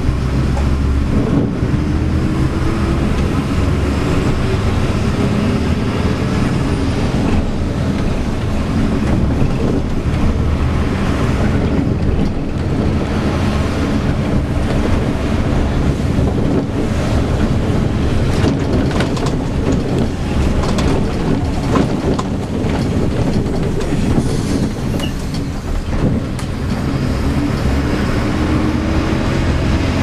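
Inside a Mercedes-Benz O-500M intercity bus on the move: the diesel engine running under road noise, its pitch rising as the bus accelerates near the start and again near the end. Clicks and rattles from the body and fittings come through in the middle.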